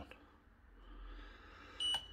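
A single short, high electronic beep from the Sharp ES-HFH814AW3 washing machine's control panel near the end. It confirms a press of the temperature button, which sets the wash to 30 °C.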